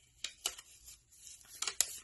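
A sheet of paper being handled and folded by hand, with a few sharp crinkles: a couple early on and a quick cluster near the end.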